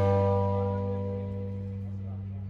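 A live rock band's closing chord ringing out: electric guitars and bass sustain one held chord that fades steadily, with no drum hits.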